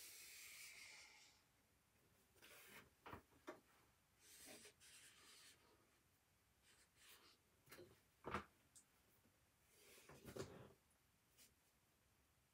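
Faint scratching and rubbing of felt-tip markers drawing on sketchbook paper, broken by a few short soft clicks and knocks, the sharpest about two-thirds of the way through.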